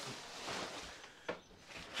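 Faint rustling of a fabric shower curtain being handled, with a single light click about a second and a half in.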